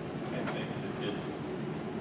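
A lull in a man's talk filled by steady low room rumble, with faint bits of speech.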